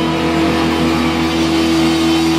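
Distorted electric guitars and bass holding one sustained heavy chord that rings out steadily, with no drum hits.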